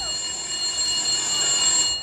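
A telephone ringing sound effect in the performance's recorded track: a steady high electronic ring that starts as the music stops and cuts off just before the next recorded 'Hello?'.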